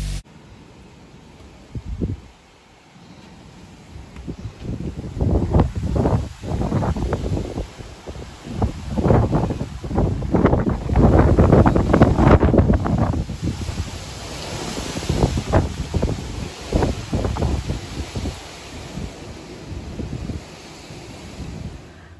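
Strong gusty wind buffeting the microphone: loud, irregular low rumbling blasts that come and go every second or so, heaviest in the middle, over a fainter steady hiss.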